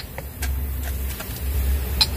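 Low rumble of a nearby motor vehicle running, with a few light clicks.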